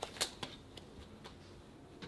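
Uno playing cards being handled at a table: three sharp card snaps close together in the first half second, then a couple of fainter clicks.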